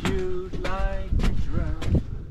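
A man's voice making short, steady-pitched sung or hummed notes, one after another, while footsteps knock on steel stair treads about every half second.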